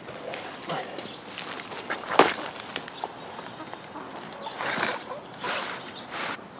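Soil being scraped and tipped from a bucket back into the hole of a double-dug garden bed, with scuffing steps around it and a sharp knock about two seconds in.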